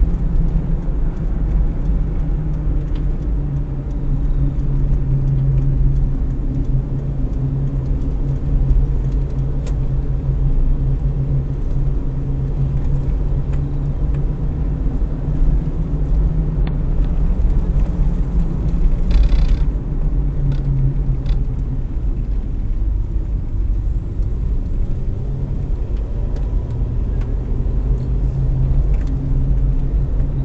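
Toyota Rush running along a rough unlit road, heard inside the cabin as a steady low engine and tyre rumble. There is one brief burst of brighter noise about two-thirds of the way through.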